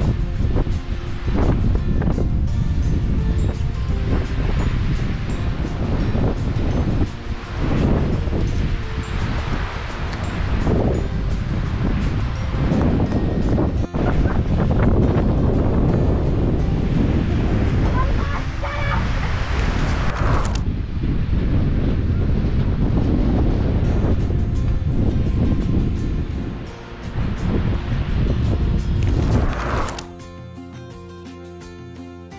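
Wind buffeting the microphone, a loud uneven rumbling noise that swells and eases, with music playing underneath.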